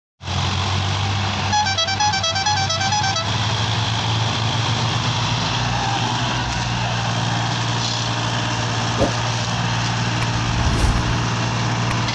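Diesel engines of three farm tractors running steadily under heavy load as they haul one trolley piled with sugarcane. A short stepped beeping tune from a musical horn plays over the engines about a second and a half in.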